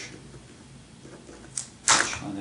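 Ballpoint pen writing quietly on paper, then a small click and the pen set down on a tabletop near the end, the loudest sound.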